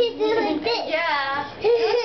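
A young child singing wordlessly, in a high voice, with a short break about one and a half seconds in.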